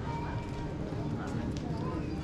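Street bustle on a pedestrian lane: passers-by talking indistinctly, with clicking footsteps on the stone paving.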